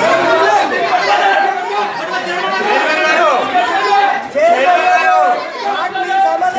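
Several people talking at once, their voices overlapping, with one man speaking into a microphone.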